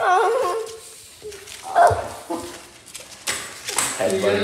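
Short, high, wavering vocal cries: one right at the start and another about two seconds in, then a brief noisy rustle near the end.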